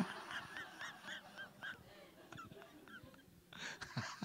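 Quiet, high-pitched laughter: a quick run of short, squeaky 'hee' sounds that fades out over the first two seconds, with a little more laughing near the end.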